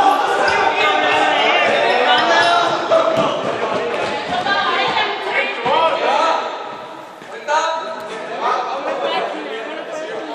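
A group of people talking and calling out over one another, the voices echoing in a large sports hall.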